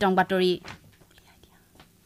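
A newsreader's voice ends a spoken phrase in the first half-second, followed by a pause of near silence with only faint room tone.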